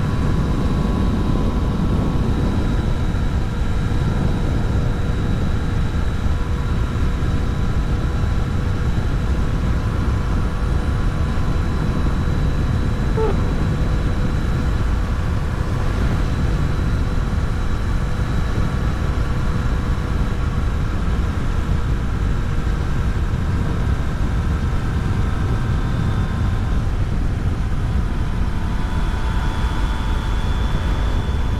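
Steady wind and road rush from a Yamaha Tracer 900 GT motorcycle at a constant cruise, with the bike's three-cylinder engine holding an even hum underneath.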